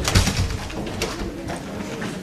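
A dull, boomy thump picked up by a table microphone, with a lighter knock about a second later.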